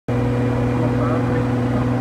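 Washing machine drum turning on a broken tub bearing: a steady hum with a rough rumble underneath.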